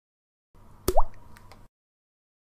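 Logo-reveal sound effect: a single water-drop plop, a sharp click with a quick rising pitch about a second in, followed by a couple of faint ticks.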